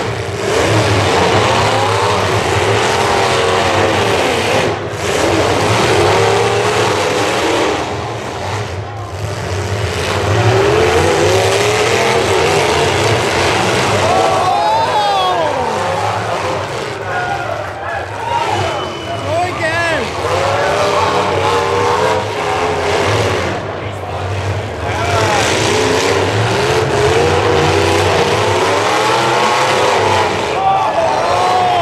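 Several demolition derby cars' engines revving hard through loud open exhausts, their pitch rising and falling over and over as they drive and manoeuvre.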